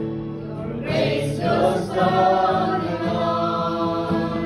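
A small group of voices singing a slow worship song together, accompanied by acoustic guitar and keyboard. Steady held chords sound throughout, and the voices swell in about a second in.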